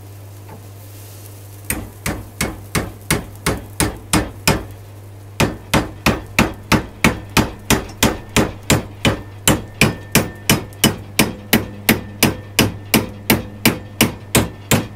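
Hammer blows on a brass tube clamped in a steel bench vise, bending its end over the vise jaw. The blows begin about two seconds in and come steadily at two to three a second, with a short pause just under halfway through.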